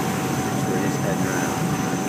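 Steady low rumble of a ferry under way, with a thin steady whine over it and faint background voices.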